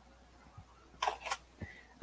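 Faint handling noise: a few light knocks and a quick cluster of sharp clicks about a second in, as small objects are picked up and moved.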